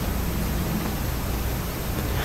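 Steady hiss with a low hum underneath and no speech: the room tone of the recording.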